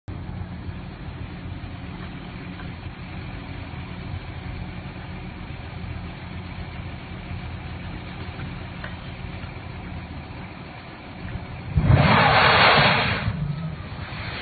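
A steady low engine hum, then, about twelve seconds in, a sudden loud rush of noise as burning petroleum products flare up into a huge fireball, lasting about a second and a half before tapering off.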